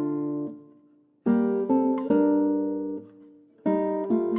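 Background music: an acoustic guitar strumming chords. Each chord is struck and left to ring briefly before it stops. There are short gaps, about a second in and again near the end.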